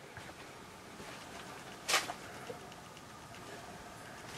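Quiet room hiss broken about two seconds in by a single short, sharp crack or knock, followed by a fainter tick half a second later.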